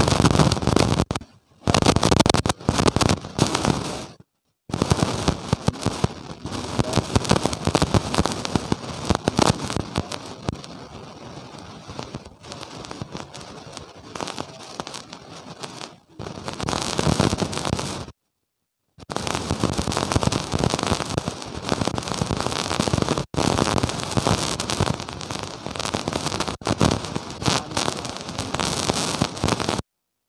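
Harsh, dense crackling noise from a lavalier microphone recording, cut by several sudden dropouts to complete silence, the longest about a second. This is the sound of badly distorted, glitching audio.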